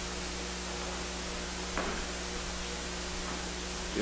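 Steady hiss with a low electrical hum from the church's microphone and sound system, and one faint knock a little under two seconds in.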